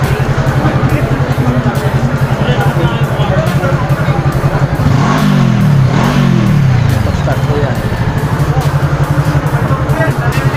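Motorcycle engine idling steadily, blipped twice about halfway through, with the pitch rising and falling back each time.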